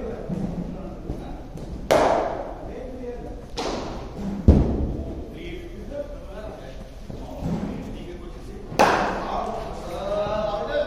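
Sharp knocks of a hard cricket ball against bat, matting pitch and surroundings during net practice, four in all, the loudest about halfway, each echoing in the large indoor hall.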